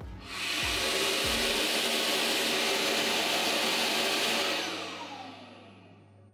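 Compressed air driving a turbocharger cartridge on a high-speed balancing stand: a loud, steady rushing of air with a few low thumps in the first second and a half. Near the end it fades away as the run ends, with a whine falling in pitch as the rotor spins down.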